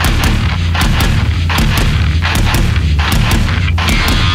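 Death-thrash metal: heavily distorted low guitars and bass under sharp, punchy drum hits several times a second.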